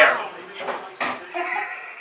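A person laughing loudly at the start, fading into quieter conversation voices.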